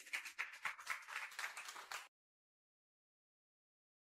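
Applause, a dense patter of hand claps, cutting off suddenly about two seconds in.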